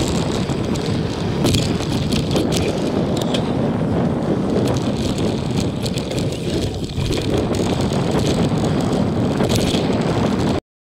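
Mountain bike rolling along a dirt trail: a steady rush of wind on the camera microphone mixed with knobby-tyre noise on dirt, and a few sharp rattles from the bike over bumps.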